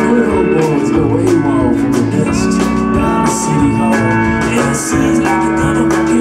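Live alt-country band playing a song, with guitars over a steady drum beat.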